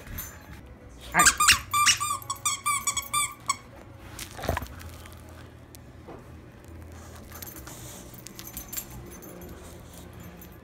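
Squeaker in a plush dog toy squeaked over and over in a quick run of high squeaks for about two seconds, starting a second in, followed by a single knock.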